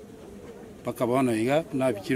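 A man's voice: about a second of quiet murmur, then a couple of short spoken phrases.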